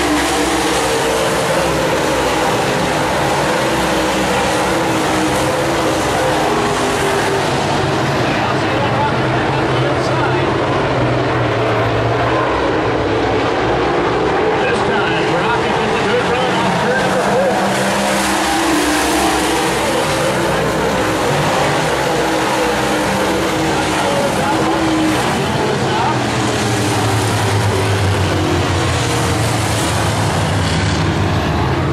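Dirt-track Super Late Model race cars' V8 engines running hard around the oval, several engines overlapping, their pitch rising and falling as cars pass and come off the corners.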